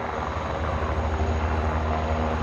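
Eurocopter Tiger attack helicopters hovering low, a steady fast beat of the rotors over the running turbines.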